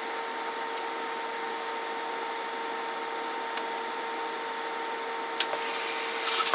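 Steady hum of electronic test-bench equipment: an even hiss with a steady mid-pitched tone and a fainter tone an octave above, and a few faint clicks.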